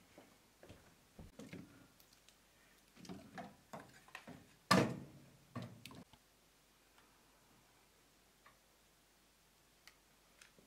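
Wood and pine cones clattering and knocking in the firebox of a cast-iron wood stove as it is laid for lighting, with one loud knock about halfway through. The last few seconds are quiet apart from a couple of faint ticks.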